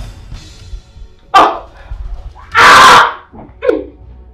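A woman crying out and wailing in distress in short sobbing bursts, the loudest a long, harsh cry a little past halfway, over background film music.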